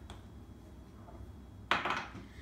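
A single short knock of a small spice jar set down on the stone countertop, near the end, over a faint low hum.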